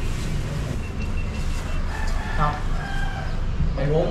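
A rooster crowing once: one long call that starts about a second in and lasts about two seconds, over a steady low background hum.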